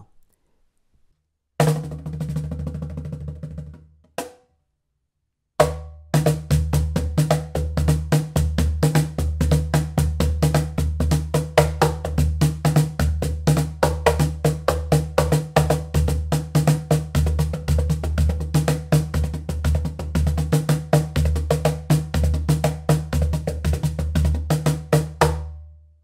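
The round Asian-hardwood tube body of a Pearl Inner Circle Multi Drum Cajon, played with bare hands like a djembe or conga. A short run of strikes comes about two seconds in, then a pause, then about twenty seconds of fast, continuous hand drumming with deep bass tones and sharp slaps.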